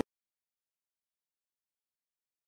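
Silence: the sound track is empty, with nothing audible.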